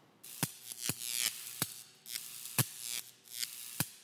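Logo-animation sound effects: about five sharp snaps over four seconds, with short hissing swishes between them over a faint steady hum.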